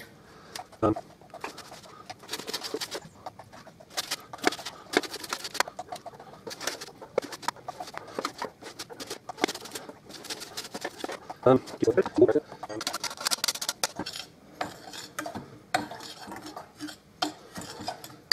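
Orange rind rubbed over the fine side of a metal box grater: a run of short, scratchy rasping strokes, with the odd click of metal against the glass bowl.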